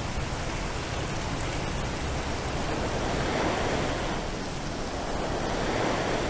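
Electronic sound sculpture playing a dense rushing noise composed to evoke water, swelling up and fading back down like a wave, with a second swell near the end.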